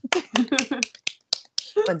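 Quick hand clapping, about six claps a second, mixed with laughter, thinning out after about a second and a half.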